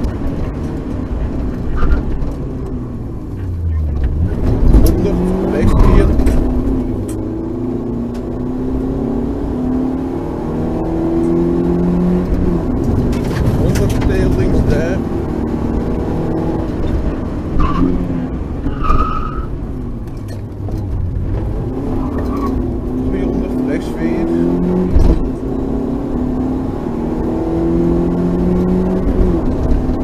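Rally car engine heard from inside the cockpit, driven hard. The revs climb and drop back several times as it goes up and down the gears, with a few sharp knocks along the way.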